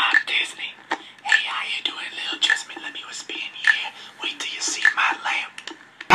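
A man whispering in short phrases.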